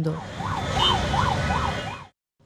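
Busy road traffic with a siren yelping quickly up and down, about four sweeps a second, over the rumble of engines.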